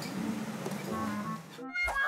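Quiet background music from the show's edit, with a brief drop and a short swoosh-like transition sound near the end.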